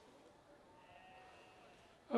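Near silence: faint hiss on the line, with a faint, high, drawn-out pitched sound for about a second in the middle.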